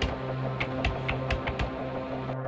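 Irregular light clicks and taps, about six of them, over a steady low hum.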